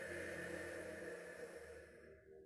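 A person's long exhale through the open mouth with the palate half-closed, making a rushing 'ch' hiss like the sea, as in an ocean-breath exercise; it fades out near the end. Soft ambient music with steady held tones plays underneath.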